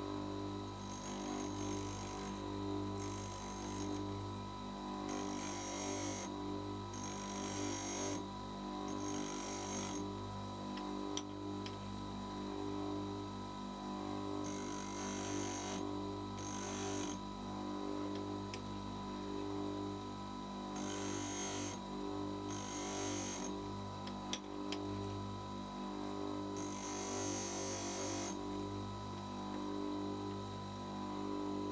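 Bench grinder running with a steady hum while the end cutting edge of an end mill is stroked against its white wheel: repeated short hisses of grinding contact, often two close together, with pauses between passes. This is the grinding of the end mill's primary clearance angle.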